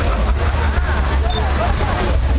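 The Magic Fountain of Montjuïc's water jets running with a steady, loud rush and low rumble, with no music. Many people chat over it.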